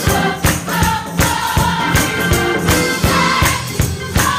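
A large gospel choir singing together over a band, with drums keeping a steady beat of about two or three strokes a second.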